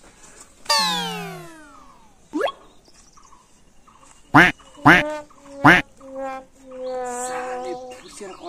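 Cartoon-style comedy sound effects: a long falling whistle glide about a second in, then a quick rising zip, then three loud, sharp rising chirps in quick succession about halfway through, ending in a held tone near the end.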